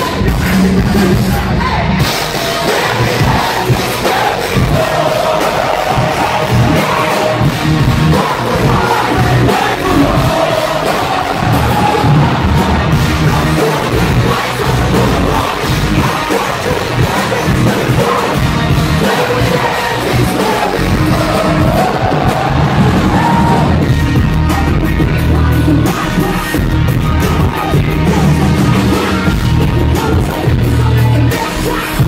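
A rap-rock/punk band playing loudly live, recorded from inside the audience, with the crowd's noise mixed into the music.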